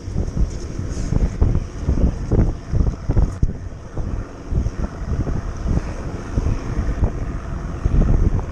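Wind buffeting the microphone in uneven gusts, a heavy low rumble that surges and falls.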